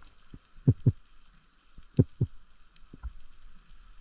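Underwater recording during a freedive descent: muffled low thumps come in two close pairs, the pairs a little over a second apart, with a few fainter ones, over a faint steady hiss of water.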